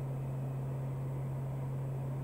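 Steady cabin drone of a Piper Meridian's Pratt & Whitney PT6A turboprop and propeller in cruise flight: one constant low hum over an even hiss.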